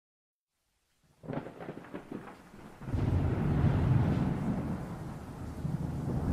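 Thunder: a crackling onset a little over a second in, then a deep rolling rumble from about three seconds in that slowly fades.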